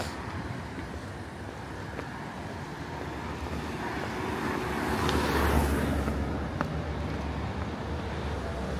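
A car approaching and passing close by on a narrow street, its engine and tyre noise swelling to a peak about five seconds in and then fading, over steady street background noise.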